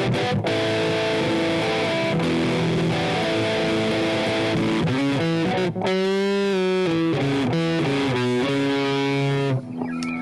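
Electric guitar played through a Line 6 Helix amp-modelling processor: sustained chords that change every second or so, with a wavering, bent note about six seconds in. The playing stops shortly before the end.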